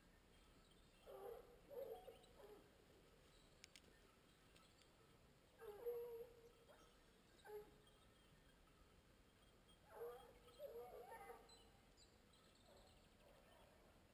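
Distant hunting hounds baying faintly in four short spells of a few cries each, giving tongue on the scent of a wild boar.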